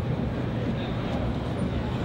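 Steady ambience of a busy outdoor exhibition ground: a continuous low rumble, with faint voices of passers-by.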